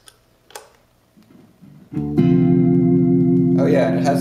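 A few soft footswitch clicks. About halfway through, an electric guitar chord through the pedalboard's effects comes in loud and holds steady without fading, with a slight fast warble. Near the end, more notes or sounds layer on top.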